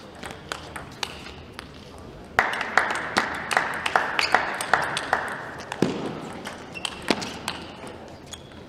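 Table tennis ball bounced repeatedly on the table before a serve: short sharp pings, about two or three a second and loudest through the middle stretch, over a wash of hall noise and voices.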